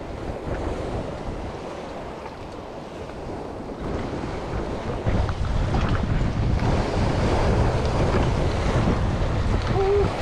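Surf breaking and washing against granite jetty rocks, with wind buffeting the microphone. The wind rumble grows heavier about five seconds in.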